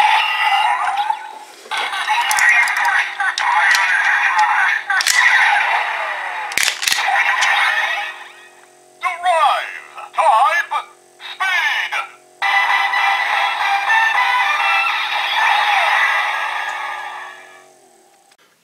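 Kamen Rider Drive Drive Driver toy transformation belt playing its electronic transformation sequence: synthesized sound effects and music, with short recorded voice calls in the middle, fading out near the end.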